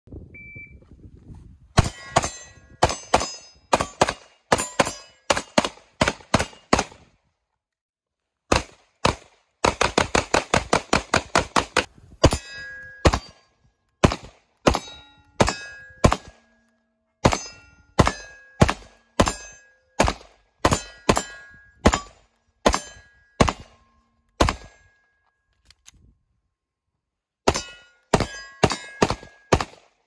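Canik Mete 9mm pistol fired in strings of shots, including one very rapid burst of about twenty shots about a third of the way through, with silent breaks between strings. Many of the later shots are followed by a short metallic ring.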